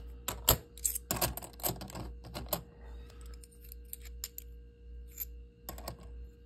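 Kennedy half dollars clicking and clinking against each other as they are handled and stacked by hand: a quick run of clicks in the first couple of seconds, then scattered single clicks.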